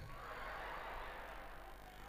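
Faint room tone with a low steady hum, fading slightly toward the end.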